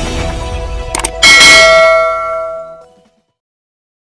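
Logo jingle of a news channel intro: music, then about a second in a sharp hit and a bright, bell-like chime that rings and dies away over about two seconds.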